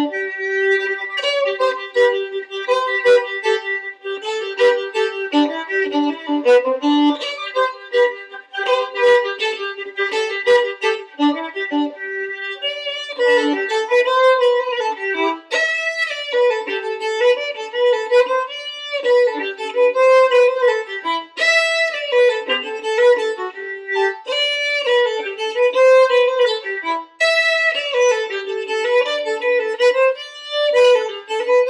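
Solo violin playing a lively Scottish fiddle tune in quick bowed notes, with no accompaniment. In the second half a short phrase repeats every few seconds.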